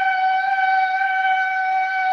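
Instrumental music: a flute-like wind instrument holding one long, steady note.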